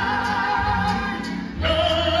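A mariachi band playing live, with voices singing long held notes; a new chord comes in about one and a half seconds in.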